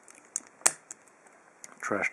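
A few short, sharp metallic clicks from handling an opened brass padlock and its steel shackle, the loudest about two-thirds of a second in.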